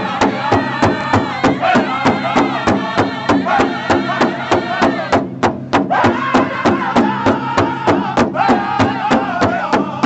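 Powwow drum group singing: several men strike one large shared bass drum with beaters in a steady beat of about four strokes a second while singing a chant in unison. The singing breaks off for a moment about five seconds in, with the drumbeat carrying on, then resumes.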